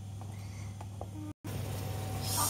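A steady low background hum with a few faint clicks. The sound cuts out completely for a moment about a second and a half in, where the recording is cut.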